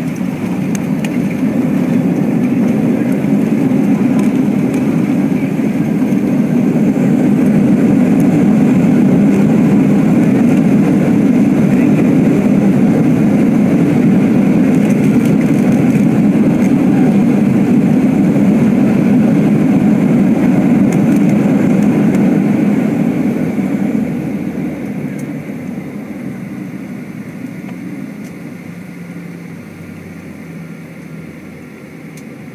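Boeing 737-800's CFM56 turbofan engines in reverse thrust during the landing rollout, heard from inside the cabin. A deep, steady roar builds over the first several seconds, holds, then dies away from about 24 seconds in as the reversers are stowed and the aircraft slows.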